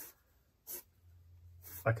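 Pencil drawing lines on paper: two brief scratching strokes, the second about two-thirds of a second in.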